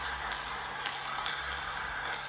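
Quiet audio from the indoor basketball footage: a few faint taps over a low steady hum.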